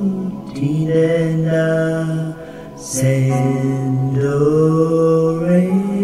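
Music: a slow sung melody with long held notes, easing off a little past two seconds before the voice comes back in.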